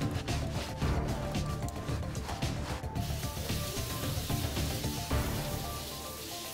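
Background music over a stiff brush scrubbing a soapy boot in quick rubbing strokes. About halfway through, the scrubbing gives way to a steady hiss of hose water spraying the boots to rinse them.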